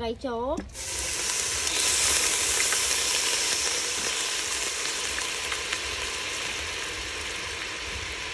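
Food sizzling in hot caramelized sugar and oil in a large aluminium pot, starting suddenly about a second in as the ingredients hit the pan, then continuing loud and steady.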